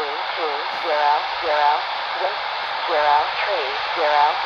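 Aviation weather broadcast voice reading out words through a handheld airband receiver's speaker, over steady radio hiss.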